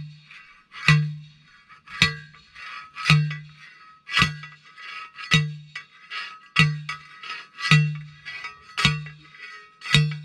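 Manual post driver pounding a steel T-post into the ground: a heavy metal clang with a low ringing note, repeated about once a second in a steady rhythm, nine strikes in all.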